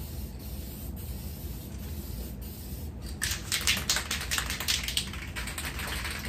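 Aerosol spray can of automotive paint hissing steadily in short passes for about three seconds. Then comes a fast rattle, about seven or eight clicks a second, typical of the can's mixing ball as the can is shaken.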